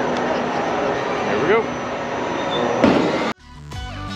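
Busy outdoor amusement-park ambience, a steady noisy wash with brief snatches of voices, which cuts off abruptly near the end and gives way to electronic music with a beat.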